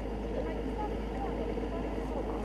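Outdoor field ambience: a steady low rumble with faint, indistinct voices over it.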